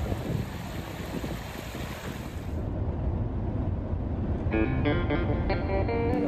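Steady low rushing noise under soft background music: first shallow stream water, then, after a cut, the road rumble of a van heard from inside. A person shouts "woo" near the end.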